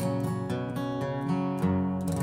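Custom Gibson LG-2 acoustic guitar, tuned down a half step, picking single strings over a C chord shape in a string-five, two, four, three pattern, the notes ringing into each other.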